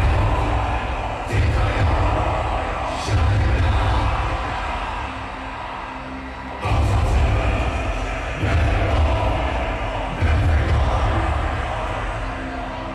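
Black metal band playing live: slow, heavy accented hits of drums, low guitars and crash cymbals, six of them, each left to ring out and fade before the next, with a longer pause between the third and fourth. A crowd cheers underneath.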